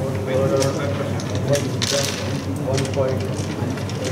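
Murmur of many indistinct voices in a hall, with a few sharp clicks of carrom pieces on the board and a short hiss about two seconds in.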